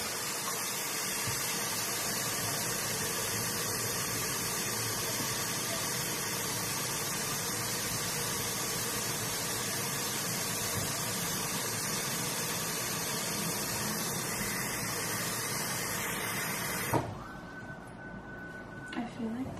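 Kitchen faucet running into a large glass bowl, a steady rush of water filling it. The tap shuts off abruptly near the end.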